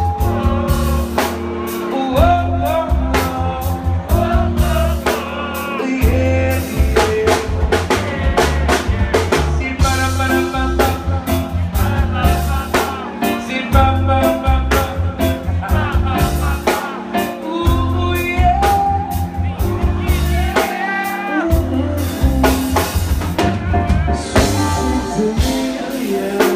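Live reggae band playing loudly: a drum kit and a heavy bass line under electric guitar and keyboard, with a singer's voice over the top.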